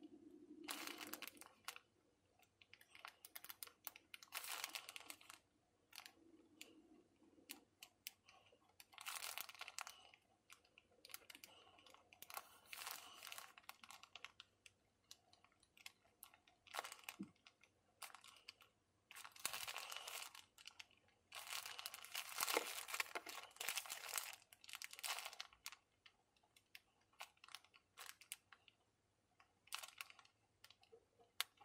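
Faint scratching of a fountain pen nib writing on paper, in irregular strokes lasting up to about a second and a half with short pauses between.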